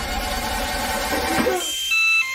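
Dense, noisy trailer sound design that drops away about one and a half seconds in. A short, high electronic beep follows near the end.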